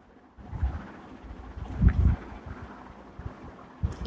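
Faint rustling and low muffled bumps as hands press a potato vada into a plate of bread crumbs, with two stronger thumps about half a second and two seconds in.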